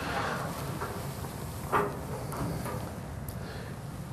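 Hinged sheet-metal front cover of a New Holland Roll-Belt 450 round baler being lifted open by hand. A short rubbing rush comes first, then a single short knock a little under two seconds in, with a few faint taps after it.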